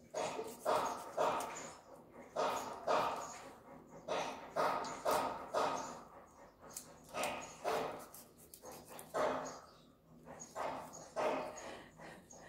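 A knife chopping fish on a thick wooden chopping block: short, sharp thuds about twice a second, in irregular runs with brief pauses.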